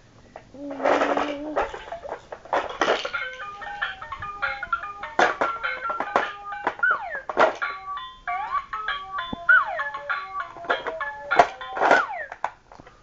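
Simple electronic toy tune: single beeping notes stepping up and down in a melody, with a couple of sliding whoops, mixed with knocks and rubbing from handling close to the microphone.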